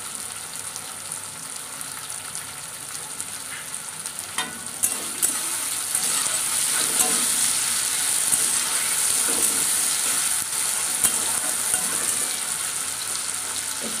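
Onions and tomato wedges sizzling in hot oil in a metal kadhai, with a steel spatula stirring and clicking against the pan. The sizzle grows louder about four and a half seconds in.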